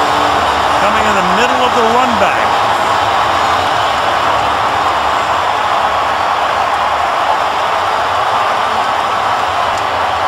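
Large stadium crowd cheering steadily and loudly for a touchdown, with one voice briefly calling out over it about a second in.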